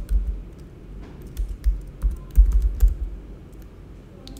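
Typing on a computer keyboard: irregular key clicks, each with a dull knock underneath, as a line of code is typed.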